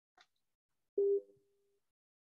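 A faint click, then about a second in a short electronic beep: one steady mid-pitched tone that fades out quickly.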